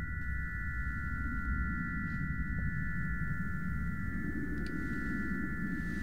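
Soundtrack drone: a steady high ringing of three close held tones over a low rumble.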